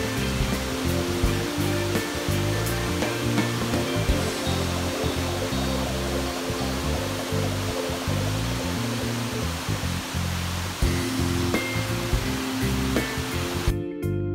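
Background music over the steady rush of a waterfall. The water noise cuts off near the end, leaving only the music.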